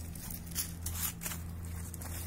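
A large animal chewing a ripe persimmon, a few short, soft crunches spaced irregularly over a steady low hum.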